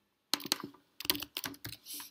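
Computer keyboard typing: a quick run of keystrokes starting about a third of a second in, with a short pause around the middle.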